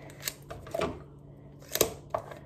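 Hands handling a small cardboard box and sticky tape: a few light clicks and rustles, with a sharper tap near the end.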